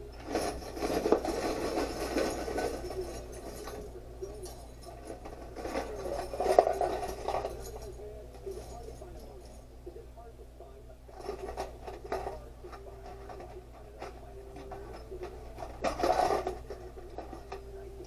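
Small metal hardware rattling in a clear plastic jar, then tipped out and pushed around on a workbench in four bursts of rummaging, the loudest about six and a half seconds in. A faint steady hum lies underneath.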